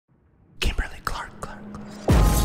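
A voice whispering a few short breathy syllables, starting about half a second in.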